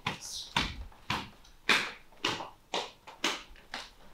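A steady series of sharp slaps, about two a second, eight in all.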